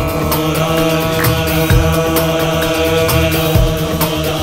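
Bollywood film song: long held notes over a steady drum beat of about two strokes a second.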